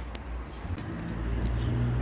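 A car engine running: a steady low hum that builds gradually in loudness through the second half.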